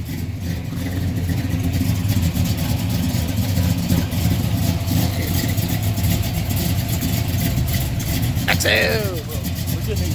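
Car engines running with a steady low rumble. A voice calls out briefly near the end.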